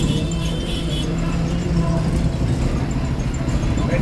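A bus engine running under way with road rumble, heard from inside the driver's cab, with music playing over it.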